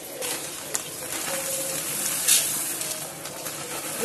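Dry whole masoor lentils pouring from a plastic bag into a metal pressure-cooker pot: a steady hissing rattle of grains falling on metal, with one louder rustle a little past halfway.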